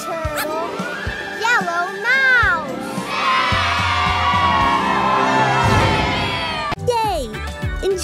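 Children's cartoon soundtrack: music with wordless children's voices calling out and exclaiming over it. A fuller, sustained swell of voices and music comes in the middle, and an abrupt cut to different speech-like audio comes near the end.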